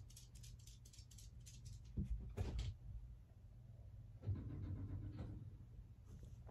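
Faint sounds from pet dogs: a short noisy sound about two seconds in, then a longer, steadier low-pitched sound about four seconds in.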